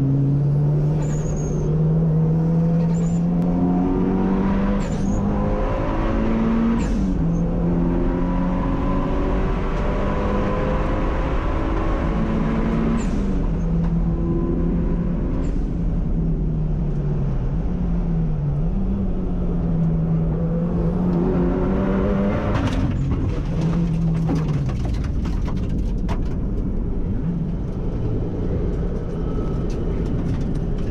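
Mitsubishi Lancer Evolution's turbocharged four-cylinder engine, heard inside a stripped, caged cabin, revving hard and falling back at each gear change, with a short sharp hiss at several of the shifts. Near the end there is a burst of clatter and the engine note falls away and fades: the engine is failing.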